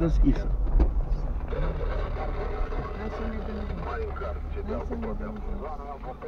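Car interior: a steady low engine and road rumble as the car rolls slowly over an unpaved lot, with quiet voices in the cabin.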